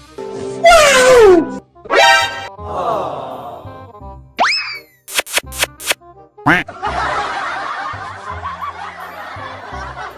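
Cartoon sound effects edited over background music. About a second in comes a long falling whistle, then a quick rising sweep and, mid-way, a boing-like upward swoop. Four sharp knocks follow, then a steady noisy stretch to the end.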